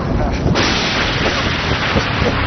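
Volcanic debris pelting a roof: a dense, continuous clatter of many small impacts over a roaring hiss that gets suddenly louder about half a second in.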